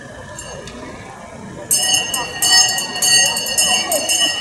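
Hand bell rung rapidly and continuously, starting suddenly a little under two seconds in: the last-lap bell of a track cycling race. Spectators' voices murmur underneath.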